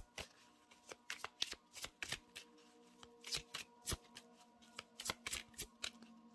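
A deck of tarot cards shuffled by hand: an irregular run of quick papery snaps and flicks as the cards slide and slap together.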